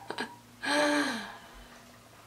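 A woman's short, breathy voiced exhale lasting about half a second, its pitch falling at the end, just after a small mouth click.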